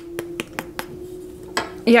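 Crispy crust of a baked polvilho (tapioca-starch) roll crackling in a quick run of short sharp clicks as fingers press and pull it open, over a faint steady hum.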